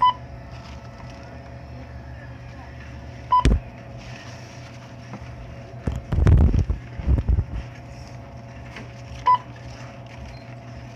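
Three short electronic beeps, all at the same pitch, spaced a few seconds apart, over a steady low hum. Between the beeps come muffled bumps and rubbing of fabric against the microphone, loudest about six to seven and a half seconds in.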